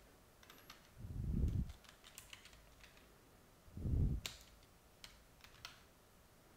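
Computer keyboard typing: scattered key clicks. Two louder, low muffled thumps come about a second in and about four seconds in.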